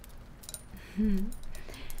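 A woman's short, soft voiced sound about a second in, a hum or a breathy laugh with a lift in pitch, amid faint close-miked clicks.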